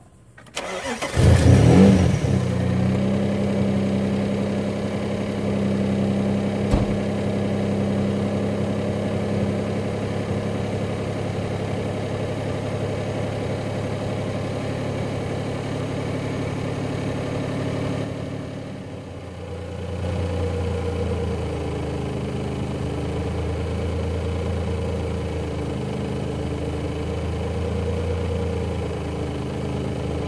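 Cold start of a turbocharged Mazda MX-6 engine, not run all night. It fires up about a second in with a brief rise in revs, then settles into a steady idle. About eighteen seconds in the idle dips and runs on a little lower, its pitch wavering gently.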